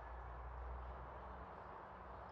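Faint, steady outdoor ambience, with no distinct sound standing out.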